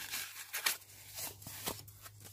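Foam packing sheet around a plastic phone case rustling and crinkling as it is handled, with a few small clicks.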